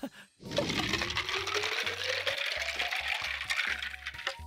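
Water poured from a plastic pitcher into a clear plastic water bottle: a steady splashing pour whose pitch rises as the bottle fills.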